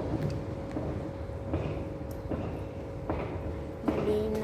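Steady low mechanical hum with a thin constant whine above it, broken by a few soft knocks.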